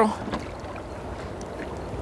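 Water sloshing and lightly splashing at a boat's side as a hooked bass swims at the surface, over a steady low hiss of wind and water.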